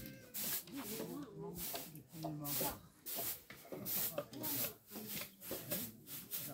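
A knife blade scraping along a thin bamboo strip, shaving it down in repeated short strokes, about two a second.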